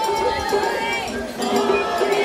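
Festival crowd talking around a dashi float, mixed with the float's hayashi band: long held flute-like tones and the clink of a small hand gong.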